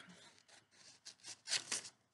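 Scissors snipping through red construction paper, a series of short cuts that grow louder near the end, as a paper circle is cut in half.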